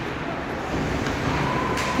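Ice hockey rink noise during live play: a steady wash of sound from skates and sticks on the ice and the arena around it, with a thin steady tone coming in past the middle.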